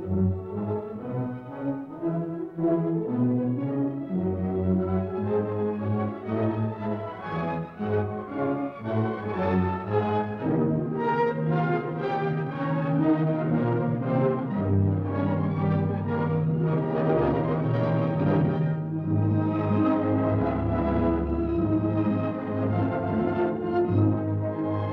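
Orchestral film score in sustained chords, growing fuller and busier about ten seconds in.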